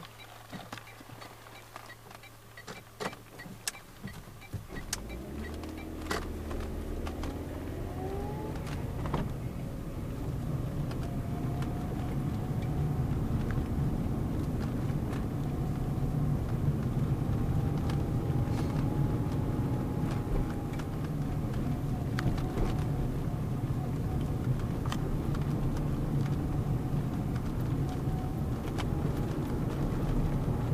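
Car engine and tyre noise heard from inside the cabin: a quiet hum with a few clicks at first, then about five seconds in the engine picks up, its pitch rising as the car speeds up, and settles into a steady low rumble of cruising on the road.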